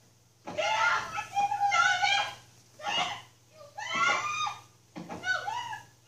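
Women crying out and shrieking during a physical fight, in about four high, wavering outbursts, over a low steady hum.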